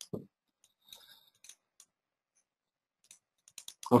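Scattered faint clicks of a computer mouse and keyboard, with a short low thump just after the start and a quick run of clicks near the end.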